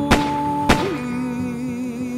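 Music with long held notes, cut by two sharp bangs a little over half a second apart.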